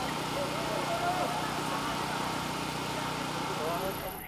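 Busy outdoor street ambience at a road race: a steady wash of noise with a low steady hum underneath and distant, indistinct voices.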